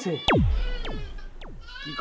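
Three quick swoops falling steeply in pitch, an added drama sound effect, over a low rumble. Near the end a goat bleats with a wavering call.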